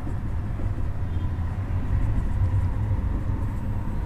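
Steady low background rumble with a faint steady high tone.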